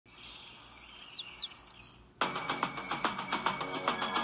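Birdsong: a quick run of high chirps and whistled pitch glides for about two seconds, followed by music with a steady beat that starts suddenly just past halfway.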